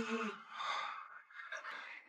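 Soft sighing breaths: a brief voiced sound at the start, trailing into quiet breathy exhales.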